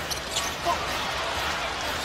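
Steady crowd noise in a basketball arena during live play, with a few faint, short sounds from the court about half a second in.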